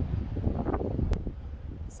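Wind buffeting a phone's microphone outdoors: an uneven low rumble with gusty flurries, and one sharp click a little over a second in.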